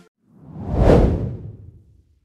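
A whoosh transition sound effect: one rushing swell that builds about a third of a second in, peaks near the middle and fades away.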